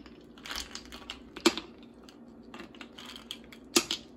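Ice cubes set one by one into the cooling bowl on top of a homemade stovetop rose-water still, clicking and knocking against it. The two sharpest knocks come about a second and a half in and near the end, over a steady low hum.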